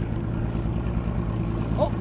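Boat's outboard motor running steadily at low trolling speed, a low even hum.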